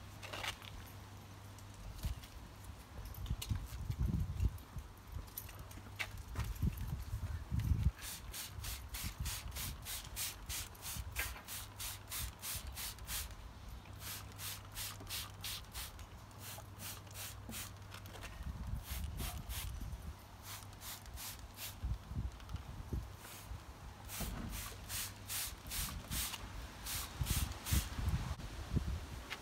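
Hand-pumped plastic trigger spray bottle squirting liquid onto leaves in quick runs of short hissing sprays, a few a second, in several bursts with pauses between them.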